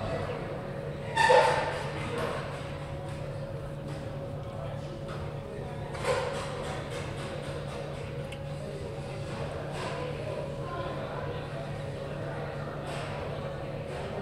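Open-air sports-field ambience with a steady low hum and distant voices. A loud, short call rings out about a second in, and fainter calls follow around six, ten and thirteen seconds.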